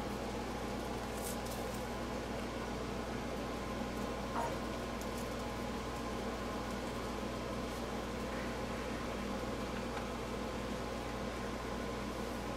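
Steady room hum with a layer of hiss, like a fan or other equipment running, with one faint click about four seconds in.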